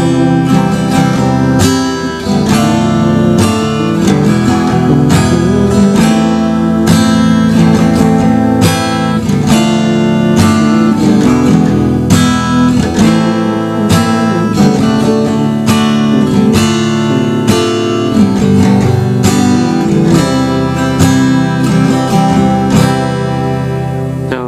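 Acoustic guitar strummed in a steady rhythm through the chorus chords, slowly. It moves from C through D minor, E and A minor, then D minor, E, A minor, D, D minor and G, and resolves on C.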